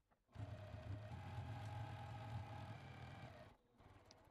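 Juki TL2000Qi sewing machine running at a steady speed, stitching binding through a quilted, foam-lined bag. It starts a moment in and stops about three and a half seconds in.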